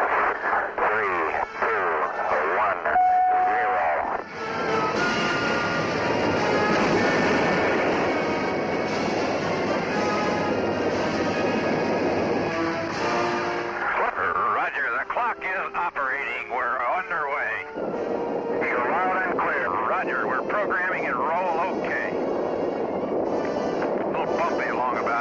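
Radio voices of the launch countdown with a short beep about three seconds in. Then, for about ten seconds, the noise of the Atlas rocket's engines at liftoff mixed with music, followed by more radio voice exchanges.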